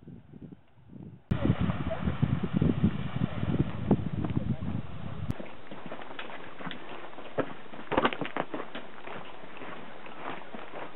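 Hikers' footsteps crunching irregularly on a dry dirt-and-gravel trail, starting suddenly about a second in. Wind rumbles on the microphone until about five seconds in.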